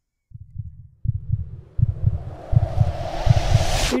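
A dramatic tension sound effect: low heartbeat-like thumps that come faster from about a second in, under a hiss that swells and rises in pitch, then cuts off suddenly.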